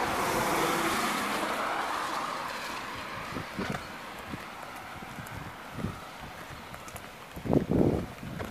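Car tyres hissing on a wet road, loudest at the start and fading over the first few seconds. Footsteps on the wet pavement follow as a few scattered knocks, and wind buffets the microphone in loud low bumps near the end.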